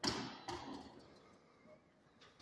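Footsteps on a hard floor in a large, echoing hall: two knocks about half a second apart, each with a short ringing tail, then only faint ticks.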